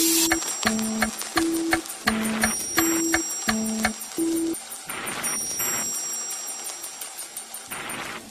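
Clock ticking about three times a second, fading away, with a soft two-note tune alternating low and high under the ticks for the first half.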